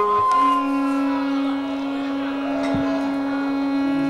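Carnatic devotional music: a wind instrument holds one long, steady note beginning a moment in, over fainter melody.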